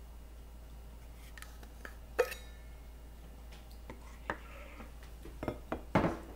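Dishes and kitchenware being handled: a few sharp clinks and knocks. The loudest, about two seconds in, rings briefly, like a cup or pot being set down, and a quick cluster of knocks comes near the end.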